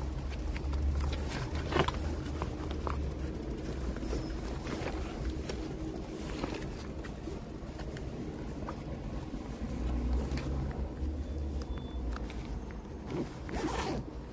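Low rumble of passing road traffic, swelling twice, with scattered clicks and rustles of gear being handled while a power bank is swapped.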